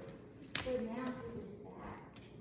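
A single sharp tap about half a second in, followed by a few quiet spoken sounds.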